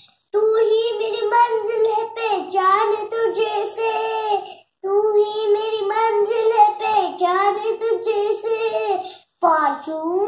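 A young girl singing a Hindi patriotic song unaccompanied, in two long phrases of about four seconds each with a brief pause between them, and a third phrase beginning just before the end.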